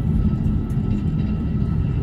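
Steady low rumble inside the cabin of a jet airliner taxiing after landing.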